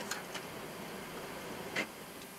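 Boeing 737-800 flight-deck noise during the landing roll: a steady, even rush of air and engine noise with a faint low hum and a few light clicks.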